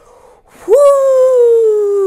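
A woman's long, loud "woo!", starting about half a second in and held, its pitch sliding slowly down: an exclamation at how intense something was.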